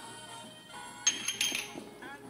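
A few quick metallic clinks with a short ring about a second in, from a stainless steel mixing bowl of flour being handled and lifted off a stone countertop, over quiet background music.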